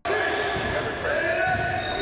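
A basketball bouncing on an indoor court, with a voice over it.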